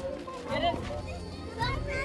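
Children's voices calling and shouting as they play, over a background music bed.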